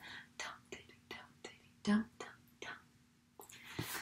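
A woman whispering a rhythmic 'dum diddy dum diddy dum dum dum' chant, about three short syllables a second, one of them briefly voiced about two seconds in. An intake of breath comes near the end.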